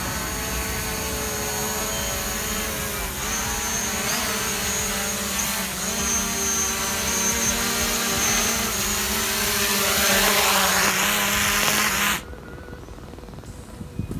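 DJI Mavic Pro quadcopter's propellers whining as it hovers low and comes in to land. The pitch wavers a little as it is steered and the sound grows louder, then cuts off suddenly about twelve seconds in as the motors stop.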